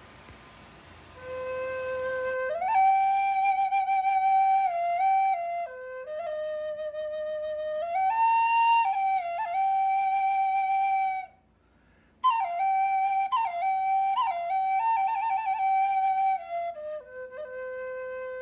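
Homemade Native American style flute, a PVC pipe body with a 3D-printed mouthpiece, played in a slow melody of a few held notes. There is a short pause for breath about two-thirds through, and it ends on a long low note.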